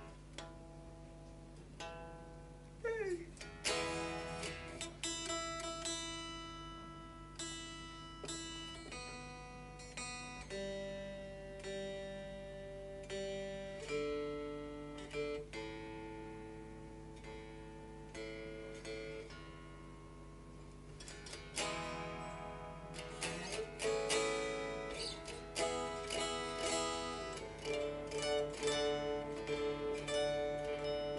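Fender Duo-Sonic short-scale electric guitar strings being picked note by note, each note left to ring, while the intonation is checked after a saddle adjustment. A note slides down in pitch about three seconds in, and the picking gets quicker and denser in the last third.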